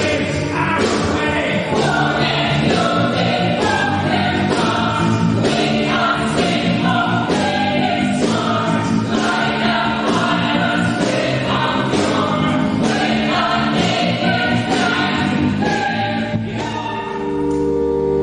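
A choir singing with an instrumental ensemble over a regular percussive beat. About a second before the end it gives way to held instrumental chords.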